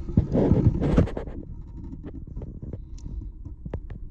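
Fingertip pressing scotch tape against the wall of a clear container: a loud low rumble of rubbing and handling for about the first second, then a few light ticks and crinkles of the tape.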